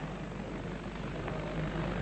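Steady, even background noise: the room tone of a large debating chamber with recording hiss, in a pause between a speaker's sentences.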